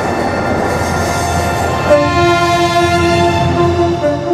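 Network Rail HST test train's power car running with a steady rumble, then about two seconds in its horn sounds suddenly and holds for about two seconds.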